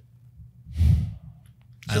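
A man sighs, a single audible breath out about half a second long, a second into a thoughtful pause; a man starts speaking near the end.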